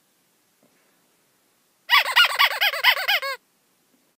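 A cartoon-style sound effect: a loud warbling, honk-like tone whose pitch wobbles rapidly up and down for about a second and a half, ending on a falling note.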